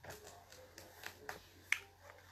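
A few faint, short clicks and light taps, with one sharper tick near the end, from a pen and papers being handled on a desk.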